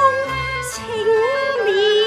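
A woman singing Cantonese opera song (yueqiu) in a wavering, ornamented line with vibrato, accompanied by instruments holding steady notes beneath her.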